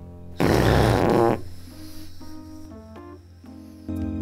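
A single loud, rasping, rattling burst about a second long, over soft background music.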